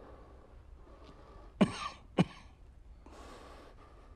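A man coughing twice, about half a second apart, between heavy breaths.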